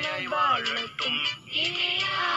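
Song with a singing voice over backing music, the voice holding and sliding between sung notes.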